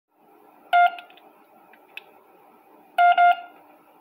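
Short electronic beeps from a siren and light-controller console's horn speaker as the remote's buttons are pressed: one beep about a second in, then a quick double beep near the end.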